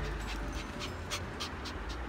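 A Pomeranian panting quickly, about four short breaths a second.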